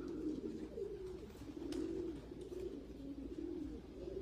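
Racing pigeons in a loft cooing: a steady run of low, wavering coos.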